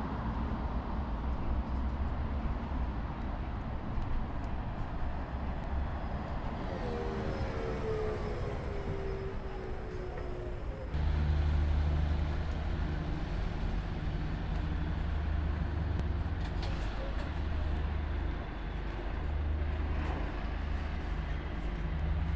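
Low steady rumble of bus engines. A whine falls in pitch for a few seconds in the middle, and at about halfway the rumble jumps louder and steadier.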